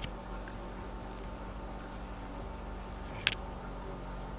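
Faint handling sounds of a metal crochet hook and fur yarn working through a plastic canvas mesh: light high squeaks about a second and a half in and one sharp click a little after three seconds, over a low steady hum.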